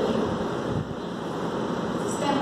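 Steady rushing background noise with a brief low rumble around the middle.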